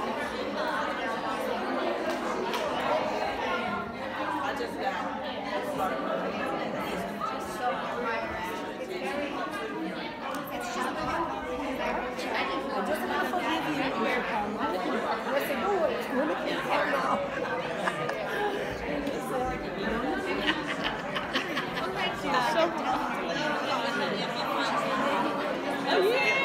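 Chatter of many people talking at once, several overlapping conversations with no single voice standing out.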